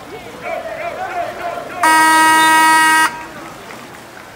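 A timing horn at a water polo game sounds once, a single steady buzzing tone held for just over a second before cutting off. Voices shout just before it.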